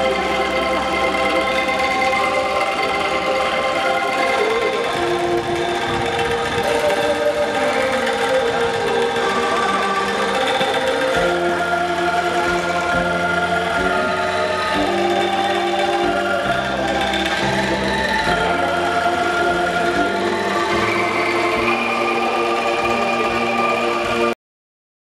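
Angklung ensemble playing, the bamboo tubes shaken in a continuous rattling tremolo to sustain shifting chords. Deeper bass notes grow stronger about halfway through.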